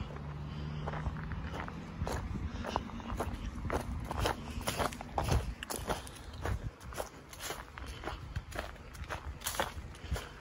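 A hiker's footsteps on gravel and dry fallen leaves, an irregular step about twice a second. A low steady hum sounds under the first couple of seconds.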